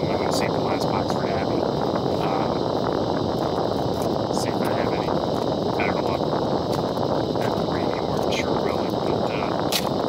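Steady rushing noise inside a vehicle cabin, with faint light ticks scattered throughout.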